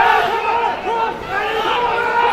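Several voices shouting and calling out over one another during open play at an Australian rules football match, from players and people at the ground.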